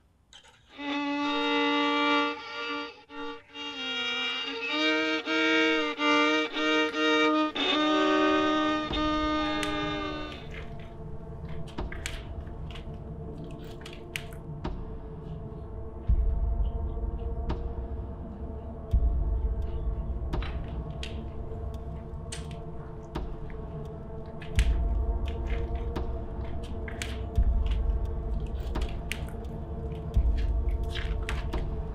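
Solo violin playing a slow melody with sliding pitch bends, stopping about ten seconds in. A low, sustained droning backing with deep bass follows, with scattered sharp clicks.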